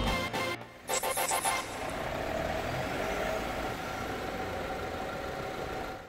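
The end of a news intro jingle fades out, then steady city street ambience with traffic noise follows.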